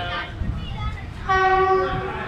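Train horn sounding one short steady blast about a second and a half in, the loudest thing here, after a briefer tone right at the start. Under it runs the low rumble of the coaches rolling slowly into the station.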